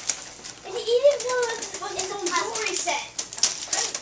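A child's high voice calling out in drawn-out, wordless sounds, over the rustling and tearing of wrapping paper.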